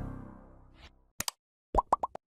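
Closing music fading out over the first second. After it come two quick clicks, then a short pop sound effect for an animated like button.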